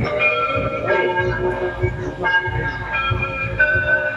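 Loud held chords of several horn-like tones, moving to a new chord every second or so, over a low pulsing rumble.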